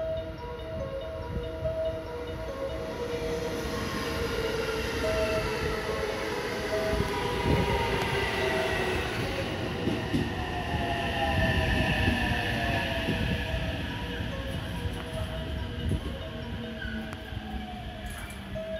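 A JR West 223 series 2000-subseries electric train pulling into the platform and braking: wheels rumbling on the rails while the motors' whine falls in pitch as it slows.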